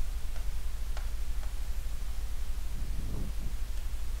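Steady low hum with a few faint light ticks in the first second and a half, as a stylus taps and draws on a smartboard's glass screen.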